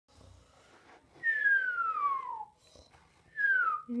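A person whistling two falling notes, a long slide down and then a shorter one, as a cartoon snore for a sleeping toy figure.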